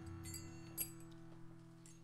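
Faint sustained musical drone of a few steady low notes held on after the chant has ended, with one light clink about three-quarters of a second in.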